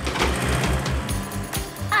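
Background cartoon music over a tractor sound effect: the engine chugs in even low pulses, and a hissing brake noise comes in as the pedal is pressed and fades out about a second and a half in.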